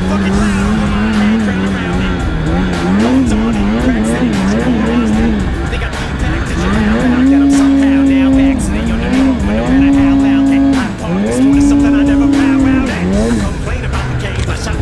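Polaris snowmobile's two-stroke engine revving hard through deep powder: in the first half the revs wobble quickly up and down as the throttle is worked, then come three long pulls held at high revs, each dropping off briefly before the next.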